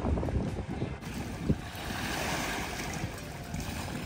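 Wind buffeting the microphone beside a rough sea, with a wave surging and washing in after about a second, and a single sharp thump midway through.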